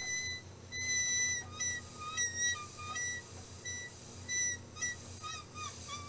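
Iwata Micron C airbrush spraying, with a high-pitched squealing that comes and goes in short bursts, jumping between a higher and a lower note. The squeal comes from the stencil setup, which extra magnets are meant to hold down so it doesn't squeal.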